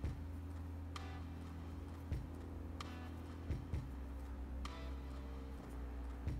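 Faint sharp clicks of a fine steel crochet hook working cotton thread, about one every two seconds, with a few soft handling bumps over a steady low hum.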